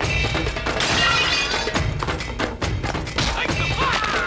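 Film fight-scene soundtrack: action background music with a pounding beat, overlaid with repeated punch and impact sound effects.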